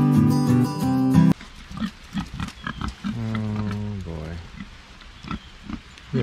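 Strummed acoustic guitar music that cuts off abruptly just over a second in, followed by pigs grunting: a run of short grunts with one longer drawn-out call about three seconds in.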